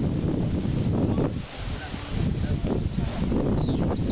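Wind rumbling on the microphone over an open rugby field, with distant shouts from players. Several quick, high, falling bird chirps come in during the last second or so.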